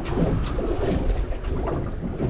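Steady wind noise buffeting the microphone aboard a small fishing boat, a rumbling rush with no distinct events.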